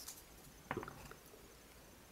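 Faint handling of a small stack of Pokémon trading cards: one brief soft card rustle about two-thirds of a second in, then only a few tiny ticks.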